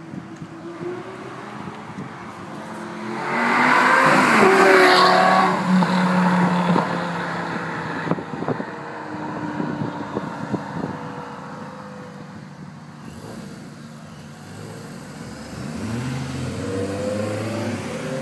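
A sports car accelerating hard past the roadside, its engine note climbing to a loud peak about three to seven seconds in and then dropping away. Near the end another car's engine rises as it accelerates toward the listener.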